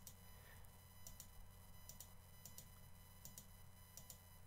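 Near silence: a faint steady electrical hum with a few faint, brief clicks.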